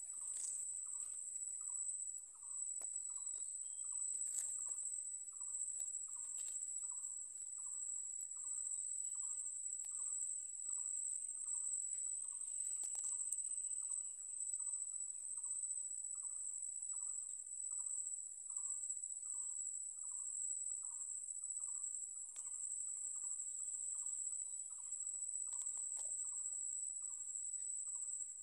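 Steady, shrill insect chorus, cricket-like, running on without a break. Beneath it a lower call pulses evenly about twice a second.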